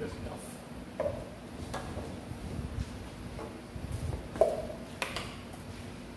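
A few light knocks and clatters of a plastic measuring cup and kitchen containers being handled while flour is measured into a bowl, with a sharper knock about five seconds in.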